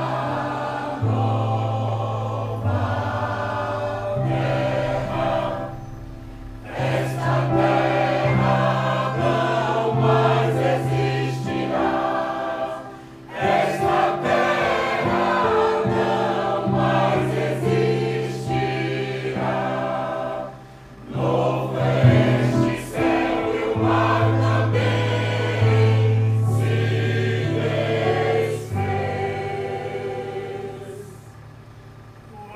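Mixed choir singing in parts with electronic keyboard accompaniment. The music pauses briefly between phrases three times.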